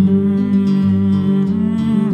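Nylon-string guitar playing over long, steady low held notes.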